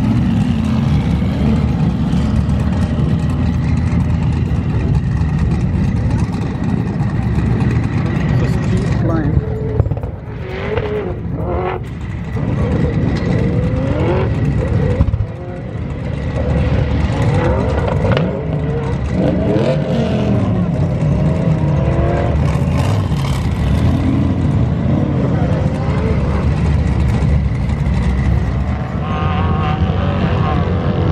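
Off-road vehicles' engines running close by with a steady low drone, and engines revving as vehicles climb a sand dune, their pitch rising and falling several times in the middle.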